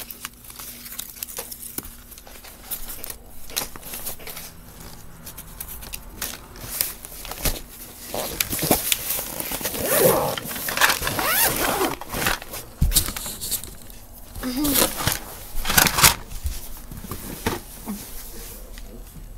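Paper and craft scraps rustling and crinkling as they are handled and gathered up off a carpeted floor, in many short bursts, with a sharp knock about two-thirds of the way through.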